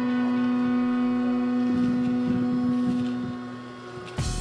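Tcisa 120 W 12 V handheld car vacuum running with a steady pitched motor hum as it works over a car floor, with a few soft knocks; the sound falls off near the end.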